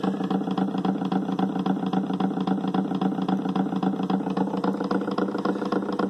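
Homemade magnet-motor rig running: a small electric motor spins a washing-machine pulley fitted with eight magnets and a Zhiguli car flywheel, giving a steady mechanical hum.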